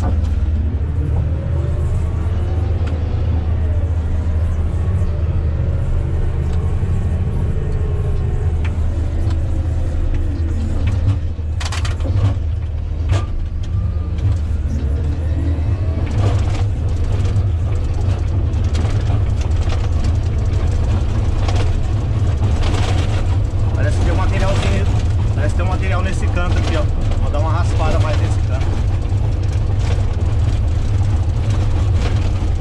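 Komatsu GD655 motor grader's diesel engine running steadily under load, heard from inside the cab, while the blade cuts and drags dry dirt. A few sharp knocks come about twelve seconds in.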